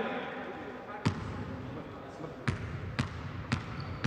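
A basketball bouncing on a hardwood court, dribbled by a player before a free throw: one bounce about a second in, then three more about half a second apart near the end.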